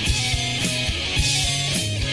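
Instrumental passage of a rock song: electric guitars, bass and a drum kit playing with a regular beat, no vocals.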